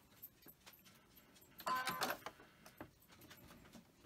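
Sewing machine running in a short burst of about half a second, about two seconds in, as the first stitches go into the quilt pieces. Faint clicks of fabric being handled at the presser foot come before and after it.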